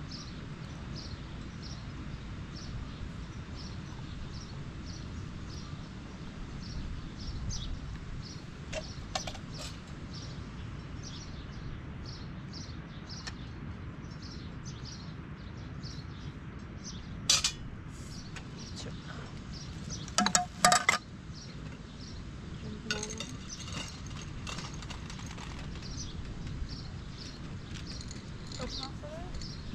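Small glass tea glasses clinking against each other and a tray as tea is poured and served: one sharp clink a little past halfway and a quick cluster of clinks a few seconds later. A short high chirp repeats about twice a second throughout, over a steady outdoor background noise.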